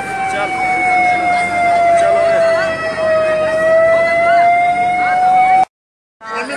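Emergency vehicle siren holding one loud tone that slides slowly down in pitch for about three seconds and then back up, over the chatter of a crowd; it cuts off suddenly shortly before the end.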